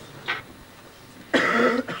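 A man clearing his throat into a close microphone: a short faint breath near the start, then a loud throaty cough-like clearing about a second and a half in.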